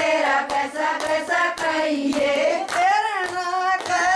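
Women singing a Haryanvi folk song together, with regular hand claps keeping the beat about twice a second.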